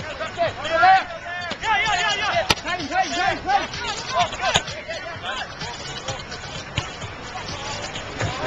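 Players and onlookers shouting and calling out during a beach Gaelic football match, several voices overlapping with no clear words. Two sharp clicks come about two and a half and four and a half seconds in.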